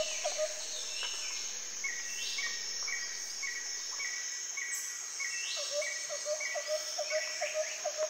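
Garden songbirds singing and calling over a steady high hiss. One bird repeats a low note about four times a second, stopping about half a second in and starting again near six seconds. Another repeats a higher note about twice a second in between.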